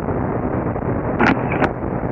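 Steady drone of a twin piston-engine aircraft's engines and airflow, heard through the band-limited cockpit headset intercom with a low steady hum. Two or three short sharp noises come about a second and a half in.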